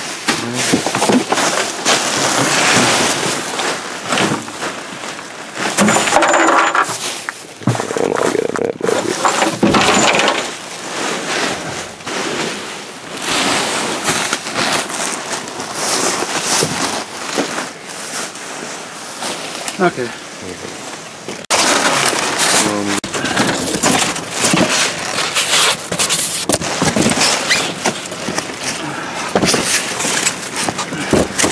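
Plastic bags and bubble wrap rustling and crinkling loudly as gloved hands dig through trash, with scattered sharp clicks and knocks from items being shifted.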